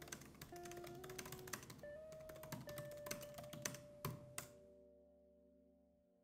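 Typing on a laptop keyboard: a quick run of key clicks, ending about four seconds in with two stronger strokes. Soft background music plays underneath and fades away near the end.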